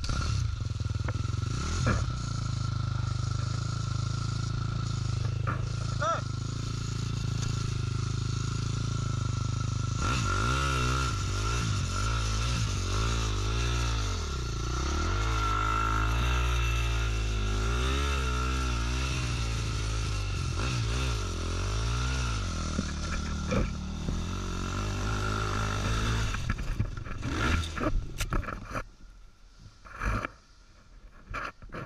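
KTM dirt bike engine idling steadily, then revved up and down again and again for several seconds as it climbs a steep sandy wall. Near the end come knocks and clatter and the engine sound cuts out suddenly as the bike goes down.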